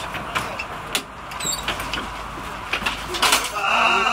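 Ambulance stretcher being loaded: scattered sharp clicks and knocks over a steady low vehicle hum, with voices starting near the end.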